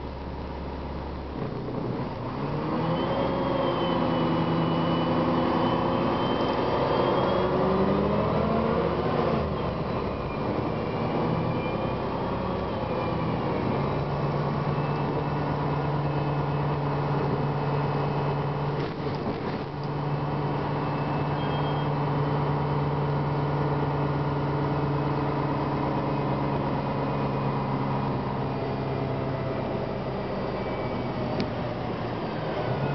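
Cummins ISM diesel drivetrain of a 2007 Gillig Advantage transit bus heard from inside the passenger cabin, pulling away: the engine note and a high whine rise together for several seconds, drop briefly, rise again, then settle into a steady tone at cruising speed. A short rattle sounds about twenty seconds in.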